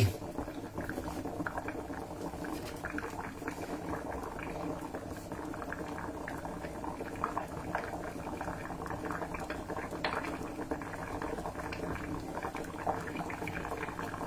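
Two pots at a steady boil: water bubbling around corn cobs, boiled to draw out their sweetness, and palm-sugar syrup bubbling in a second pot, with a soft continuous bubbling and faint crackle.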